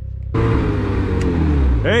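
Snowmobile engine opening up suddenly about a third of a second in, then falling in pitch as the machine slows, with a loud hiss that cuts off near the end. A man's voice calls out at the very end.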